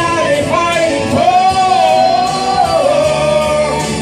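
A woman singing karaoke into a handheld microphone over a backing track. She holds one long note through the middle, bending in pitch.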